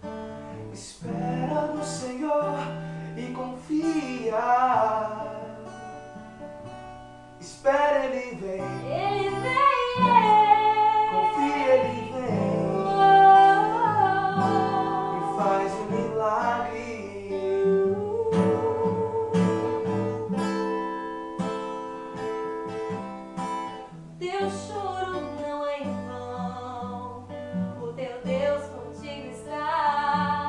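Steel-string acoustic guitar strummed and picked under a slow sung worship song, a man's voice and a woman's voice singing.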